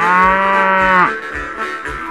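A cow mooing once, a loud call about a second long that drops in pitch as it ends, over guitar music.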